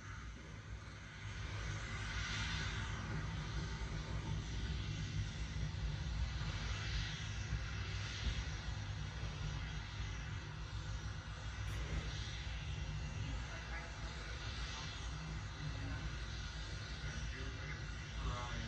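Faint, steady low rumble of Starship SN10's single Raptor rocket engine on the livestream audio, heard through a TV speaker.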